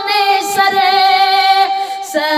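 Naat singing: a high voice holds a long, slowly wavering note without words over a steady drone.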